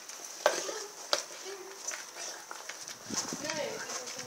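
A Rottweiler gnawing and tearing at a raw pork shoulder: wet chewing and licking with sharp clicks of teeth on meat and bone, the loudest about half a second and a second in.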